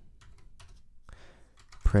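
Typing on a computer keyboard: a run of quick, quiet key clicks.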